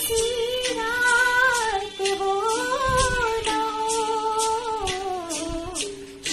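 A woman singing solo, holding long notes that slide slowly up and down in pitch with no clear words, close to humming.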